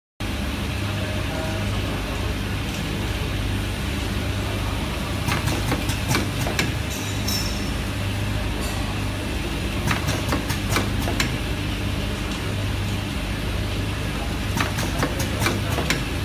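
Steady low machine hum, with three short runs of sharp plastic clicks as cable wires are pressed into the blue clip fixtures of a USB cable soldering machine's conveyor.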